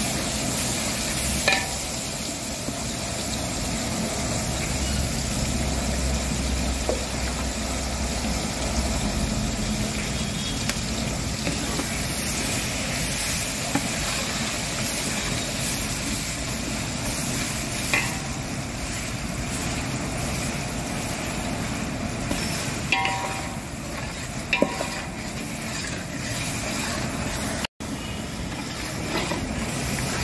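Garlic paste sizzling steadily in a large pot of hot oil with whole spices, stirred with a long metal spatula that now and then knocks against the aluminium pot.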